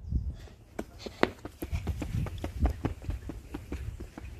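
Running footsteps on a concrete sidewalk, quick knocks about three a second, over a low rumble.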